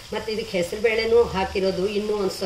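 Shankarpoli pieces deep-frying in hot oil, sizzling steadily as a slotted spoon stirs them, with a voice talking over the sizzle and louder than it.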